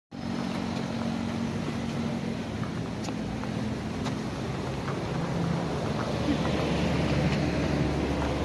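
Steady road traffic: vehicle engines running with a continuous low hum, and a few faint clicks.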